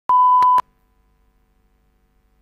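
Line-up test tone played with colour bars at the head of a video recording: one steady beep lasting about half a second, with a click where it starts, another partway through and one where it cuts off.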